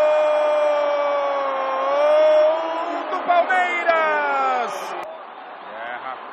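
Portuguese-language football commentator's long drawn-out goal cry ("Gooool!"), held on one pitch, lifting slightly about two seconds in, then breaking into falling syllables and cutting off about five seconds in.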